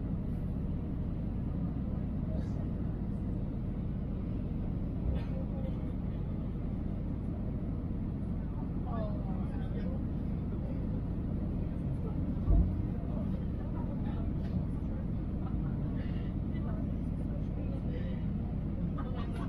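Steady cabin noise inside an Airbus A320-family airliner on final approach, the engines and airflow making an even low rumble. A single low thump comes about two-thirds of the way through.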